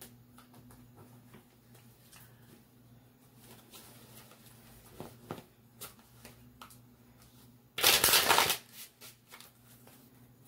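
Tarot cards being shuffled by hand: soft scattered card clicks and slides, then a louder burst of shuffling lasting under a second, about eight seconds in.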